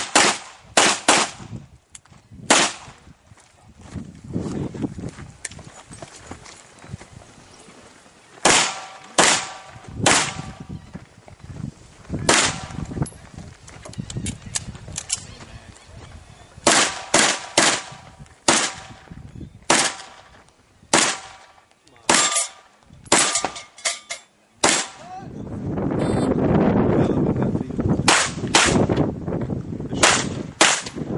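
Handgun shots fired in strings, mostly quick pairs, about twenty in all, with pauses of a few seconds between strings as the shooter moves between positions. A low noise lasts about two seconds near the end.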